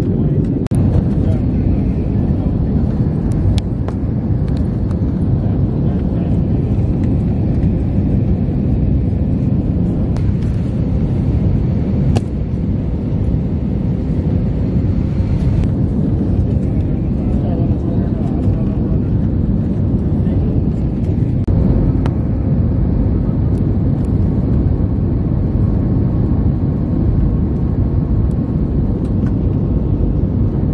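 Steady low roar of an Airbus A320-family airliner's engines and airflow, heard from inside the cabin at a window seat during the descent to landing. Its higher hiss eases a little about twenty seconds in.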